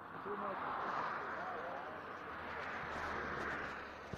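A car passing by, its tyre and road noise swelling and then fading away over a few seconds, with faint men's voices talking underneath.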